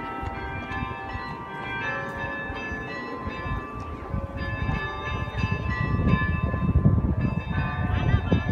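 Carillon bells of the Bruges belfry playing a pop melody, note after note, each struck bell ringing on under the next.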